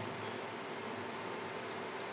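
Room tone: a steady low hiss with a faint low hum and no distinct sound events.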